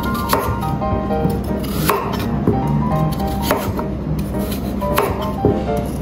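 Kitchen knife cutting through sweet potato into a wooden cutting board: about five sharp cuts, mostly a second and a half apart, each ending in a knock on the board. Background music plays throughout.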